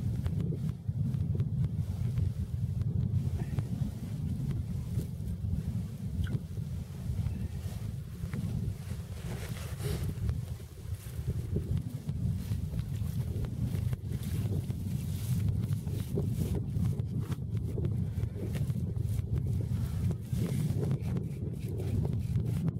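Wind buffeting the microphone: a low rumble that rises and falls in gusts.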